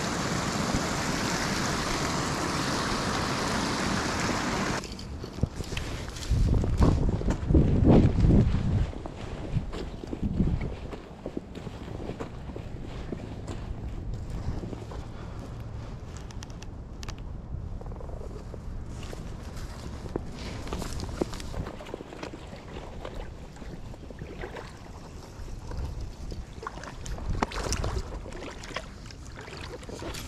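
Creek water running over a rock ledge in a steady rush for the first few seconds, cutting off abruptly. After that, wind gusts buffet the microphone, with footsteps on gravel and small handling noises.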